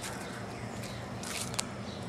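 Footsteps on wet ground, a couple of short scuffing steps about a second and a half in, over steady outdoor background noise with a faint low hum.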